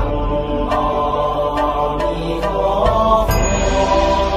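Slow Buddhist-style meditation music: a chanted mantra over a steady low drone, with a few faint clicks. A bright high tone comes in about three seconds in.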